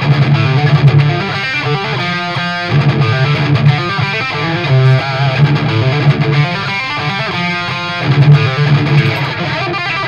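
Distorted electric guitar riff played at full speed on a Gibson Les Paul in drop-D tuning through a Randall amplifier. Heavy low notes alternate with quick higher melodic runs.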